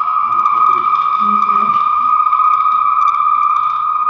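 A steady high-pitched electronic tone held at one pitch, with faint voices murmuring underneath.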